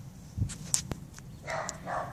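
A hungry house cat meowing briefly near the end, after a soft thump and a few light clicks.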